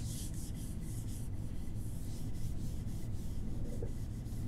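An eraser rubbing marker off a glass lightboard in quick back-and-forth strokes, several a second.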